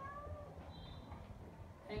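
Dry-erase marker squeaking faintly on a whiteboard while writing: a short, slightly rising squeak at the start and a thinner, higher squeak about a second in.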